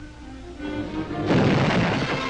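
Cartoon soundtrack: soft held orchestral notes, then a sudden loud explosive burst sound effect a little over a second in, with the music carrying on under it.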